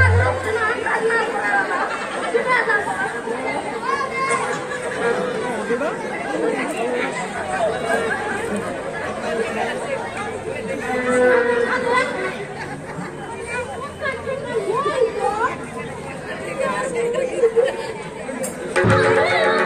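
Many voices talking over one another, a crowd chattering steadily.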